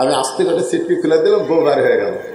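Only speech: a man preaching into a microphone.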